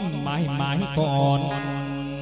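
Chầu văn ritual singing: a voice wavering through quick ornamented turns, then holding one long low note, over musical accompaniment.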